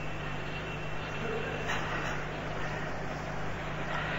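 Steady hiss with a low, even hum underneath: the background noise of the recording.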